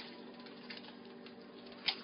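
Faint handling noises: light clicks and rustles as a bag of cornmeal is picked up and worked at to open it, with one sharper click near the end.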